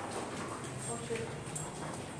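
Faint scattered knocks and shuffles of cattle hooves and people's footsteps on a concrete cowshed floor, with faint voices.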